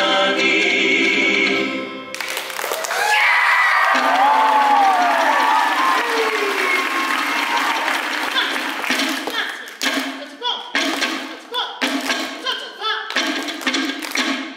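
A Samoan song from a live band and singers stops abruptly about two seconds in. Audience applause and cheering with high whoops follow. From about ten seconds in, sharp hand claps and slaps come roughly twice a second with chanting voices, as the dancers start a seated Samoan slap dance.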